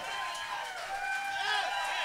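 Club audience cheering and calling out, many voices overlapping, with the band no longer playing.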